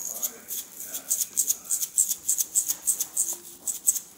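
A small shaker of sprinkles being shaken over a dish, a quick rattling at about five shakes a second.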